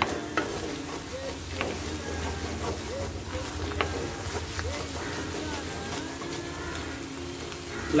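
Scrambled egg with spring onion and green chillies sizzling in a black pan while a wooden spatula stirs and scrapes it, with a few sharp knocks of the spatula on the pan. The egg is being stirred and cooked down until dry.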